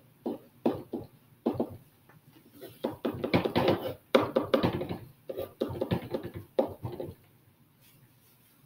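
A man muttering quietly in short, broken phrases while writing on a whiteboard, going quiet about a second before the end.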